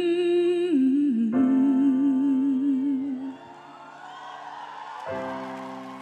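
A female singer holds a wordless note, then slides down into a long wavering vibrato, over sustained piano chords. The voice stops about halfway, the piano carries on, and a new chord comes in near the end.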